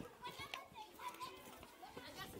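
Faint, distant children's voices: chattering and calling out in a school yard.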